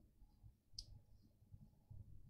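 Near silence: room tone, with one faint, short click just under a second in.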